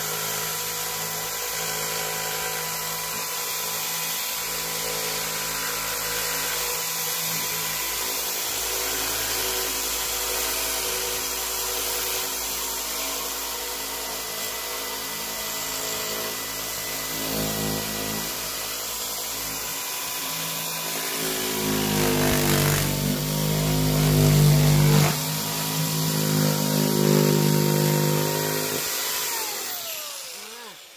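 Corded jigsaw running continuously with a steady motor whine as its blade cuts an opening in a thin beadboard panel. The cutting gets louder in the last third, then the motor winds down with a falling whine at the very end as the trigger is released.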